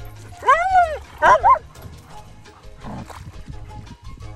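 German Shepherd dog giving one long yelp that rises and falls in pitch, followed about a second in by a few quicker, shorter yips, the excited vocalising of a dog eager to get going.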